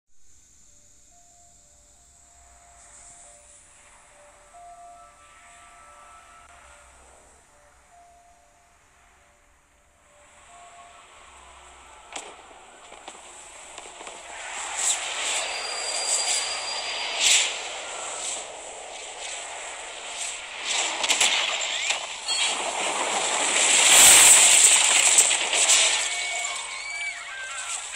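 Film sound effects of a meteor shower: a few soft held tones, then a rising rush of noise broken by sharp cracks, building to a loud impact with a deep rumble near the end.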